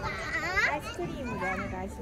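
A young child's high-pitched voice calling out, its pitch bending up and down, loudest about half a second in, then trailing off into softer vocal sounds.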